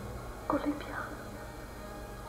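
A short voiced sound, a brief word or sob, about half a second in, over a steady low background hum.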